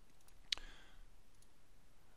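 A single sharp click about half a second in, followed by a faint brief hiss, over quiet room tone.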